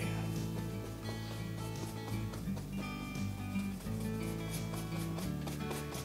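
Background instrumental music: held notes that change every second or so.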